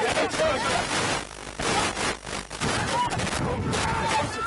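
Rugby players' distant shouts and calls during a ruck, over a rough, irregular crackling noise.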